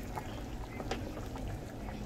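A large pot of stew in green salsa bubbling on the stove: a steady low bubbling with a few sharp little pops.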